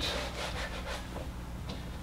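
Whiteboard eraser rubbed back and forth across the board to wipe off a written formula: a quick run of short scraping strokes in about the first second.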